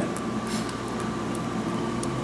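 Steady background hum of building machinery, with a faint steady high tone through it and a few faint ticks.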